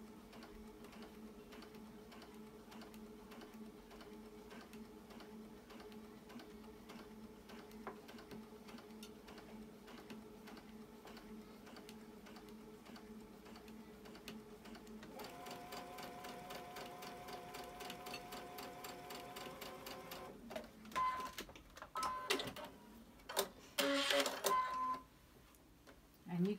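Baby Lock Ellisimo Gold II sewing machine stitching slowly through pinned cotton quilt pieces: a steady hum with an even stitch rhythm. About fifteen seconds in it runs faster and a little louder. It stops about twenty seconds in, followed by a few short clicks.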